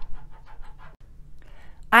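A soft breath drawn in just before a woman starts to speak, over faint room tone.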